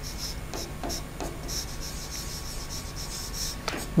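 Handwriting on the glass screen of an interactive flat panel: a string of short, faint strokes as the word 'Without' is written.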